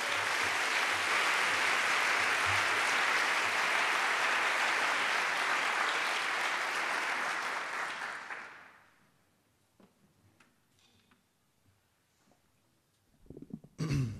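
Audience applauding, dying away after about eight seconds into near silence with a few faint clicks.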